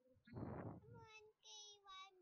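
A faint child's voice in drawn-out, sing-song tones, heard thinly over a video call, after a short breathy noise about half a second in.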